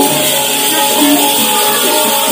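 Loud, steady music accompanying a Javanese gedrok buto dance, with sustained pitched notes over a dense background.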